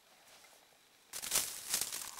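Near silence for about a second, then uneven rustling and scuffing noise of the camera being handled and swung down toward a muddy, stony trail.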